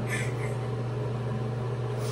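A steady low mechanical hum fills the room, with a brief soft rustle of a cloth towel against the face near the start.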